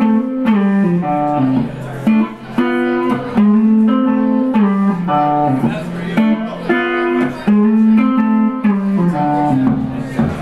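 A blues lick picked on a hollow-body electric guitar: single notes and short note groups stepping up and down in pitch, with the same short phrase coming round several times.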